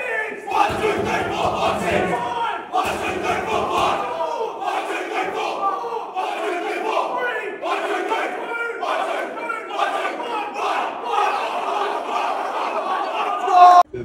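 A football team of young men shouting together in a tight huddle, a loud pre-game group chant of many voices at once that cuts off abruptly just before the end.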